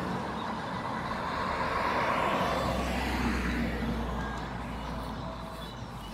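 A car driving past on the road, its noise swelling to a peak about two seconds in and then fading away. A low steady rumble sets in about halfway through.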